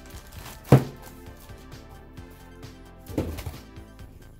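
Background music throughout, with one sharp thunk under a second in as the plastic-wrapped car stereo is lifted from its foam packing and set down on a wooden desk. A softer handling knock follows just after three seconds.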